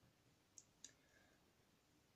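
Near silence: room tone, with two faint short clicks about a quarter of a second apart a little over half a second in.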